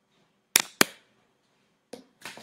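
Two sharp clicks about a quarter of a second apart, then a fainter click near the end.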